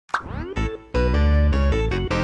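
A cartoonish plop sound effect with a quick pitch glide. It is followed, about half a second in, by cheerful keyboard background music that plays on steadily.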